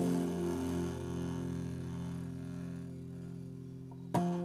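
Acoustic guitar chord ringing on after being plucked, its low notes sustaining with a slight wavering and slowly fading.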